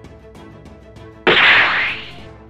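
Rhythmic background music, cut across a little over a second in by a sudden loud burst of noise, a hit or blast sound effect, that lasts under a second and dies away.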